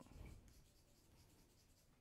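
Faint scratching of chalk writing on a chalkboard in the first half-second, then near silence.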